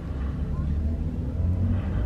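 Car interior noise: a steady low engine and road rumble with a light hiss, heard from inside the cabin while the car drives.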